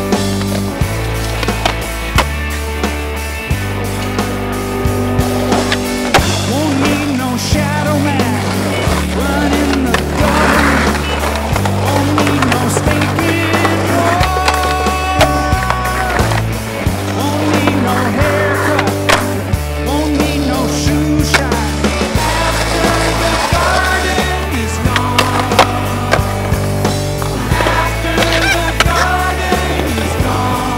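Music with a steady bass line over skateboard sounds: wheels rolling on pavement, punctuated by sharp clacks of the board popping and landing.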